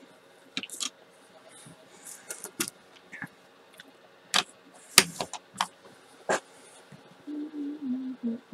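Scattered sharp clicks and clacks of hard plastic craft tools being handled and set down on a cutting mat, as a clear acrylic stamp block with its stamp is picked up and put away. The loudest clacks come around the middle.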